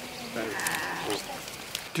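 An animal call held for about half a second, starting about half a second in, over open-air background with faint high clicks.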